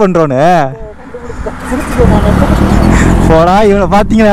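Low, steady rumble of a motorcycle on the move, coming up loud about two seconds in, between a man's shouted words.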